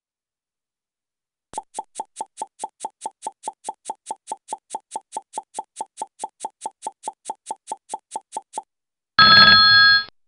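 Quiz answer-time countdown sound effect: a clock ticking about four times a second for about seven seconds, then a loud ringing bell tone near the end that signals time is up.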